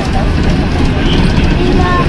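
Steady engine and road rumble inside a moving bus, with scattered passenger voices over it.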